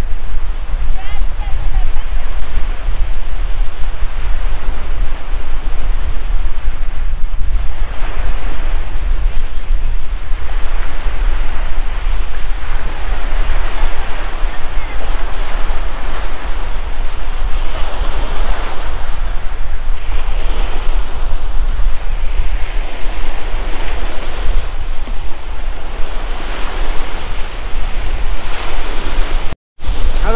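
Wind-driven waves breaking along a lake shore, the surf swelling and easing every few seconds, with strong wind buffeting the microphone as a heavy low rumble.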